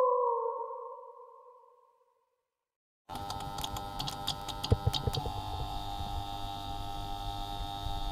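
Synthesized intro sound effects. A held electronic tone slowly falls in pitch and fades away over the first two seconds. After about a second of silence, a dense electronic sound begins with several held tones and a flurry of sharp clicks and crackles, and carries on steadily.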